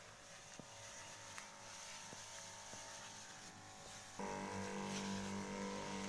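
Motorised knapsack sprayer's pump motor running with a steady hum that gets louder about four seconds in, while the sprayer is in use.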